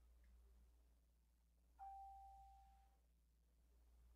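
A single ding: one clear, steady tone that starts sharply a little under two seconds in and fades out over about a second, against near silence.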